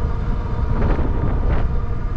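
Steady low wind rumble on the microphone of an electric bike ridden at speed on throttle, mixed with the running noise of the moving bike.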